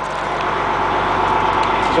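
A steady engine running at idle, with a faint held whine and the noise growing slightly louder.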